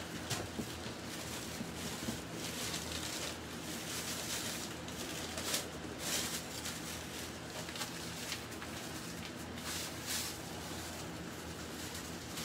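Quiet kitchen background: a steady low hum, with a few soft rustles and clicks from handling things at the counter.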